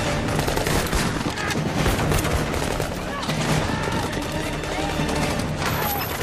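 Dense gunfire from many rifles: shots overlapping in a continuous barrage, with men shouting over it.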